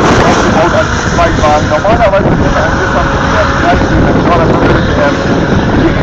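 A drift car's engine running hard as it slides through a corner, heard over heavy wind buffeting the microphone.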